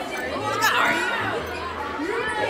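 Chatter of many people talking at once, overlapping voices with no single clear speaker.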